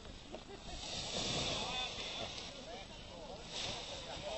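Faint distant voices of people talking, under a soft rushing hiss of wind that swells about a second in and eases off.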